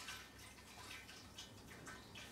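Bleach pouring from a 5-litre plastic jug into a barrel of water, faint.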